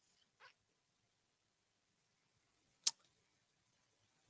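Near silence, broken by one sharp, short click just before three seconds in, with a fainter brief sound about half a second in.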